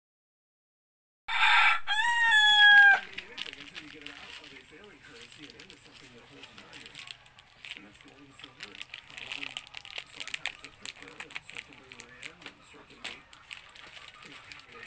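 A rooster crowing once, about a second in: a single loud call that rises and then falls away over under two seconds. Softer, busier low background sounds follow.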